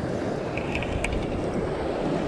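Wind rumbling on the microphone over the steady wash of surf, with a few faint light ticks about half a second to a second in.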